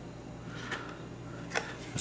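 Quiet room with a steady low hum and two brief soft clicks about a second apart, as a blister-carded Hot Wheels toy car is handled and turned over.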